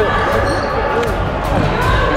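A voice, speaking or singing, over background music, with a few short knocks like a basketball bouncing on a hardwood gym floor.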